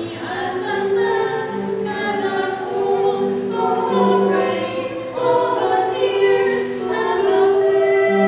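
A small group of four women singing together, over low held notes that change every second or two.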